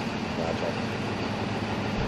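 Steady low hum of an idling vehicle engine. A faint voice comes in briefly about half a second in.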